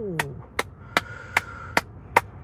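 A steady ticking beat of sharp woody clicks, about two and a half a second, with a faint held tone near the middle.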